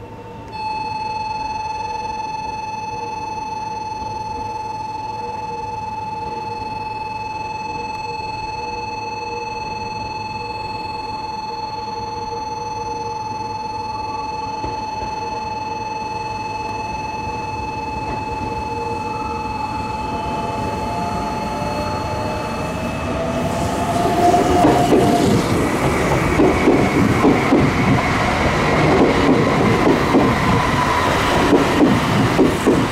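Meitetsu 1700 series electric train moving slowly, with a steady electric whine. After about 20 seconds rising motor whines join in as it gathers speed. From about 24 seconds it is louder, with rumble and wheel clatter over rail joints as it runs past close by.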